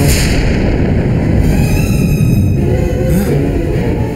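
Dramatic TV background score: a booming hit at the start, then a deep, sustained low rumble.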